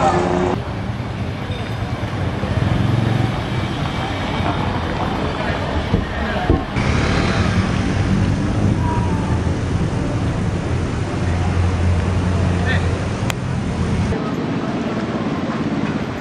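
Busy city street ambience: motor traffic running along the road with people's voices around it. The background changes abruptly a few times where separate shots are joined.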